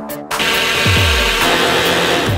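Cordless jigsaw cutting a curve through a wooden board, its motor and blade running steadily from a moment in. Background music plays over it, with a deep bass sweep falling in pitch about a second in.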